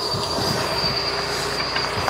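Water-fed solar panel brush on a pole scrubbing wet panels, a steady wash of bristle and spraying-water noise, with a thin steady high-pitched whine running under it.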